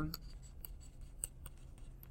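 Faint ticks and light scratching of a stylus writing on a tablet screen, over quiet room tone.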